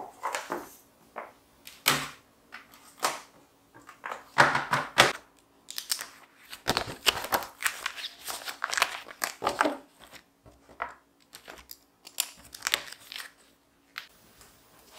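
Notebooks, papers and other small items handled on a wooden table: paper rustling and light knocks as things are picked up, stacked and set down, in irregular bursts.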